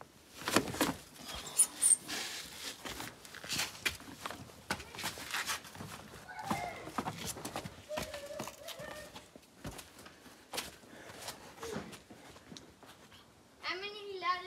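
Irregular footsteps, knocks and shoe scuffs of hikers climbing down a metal ladder and scrambling over sandstone boulders and sand.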